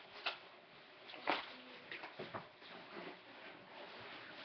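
Tea things being handled on a kitchen counter: a few short knocks and rustles, the loudest about a second in.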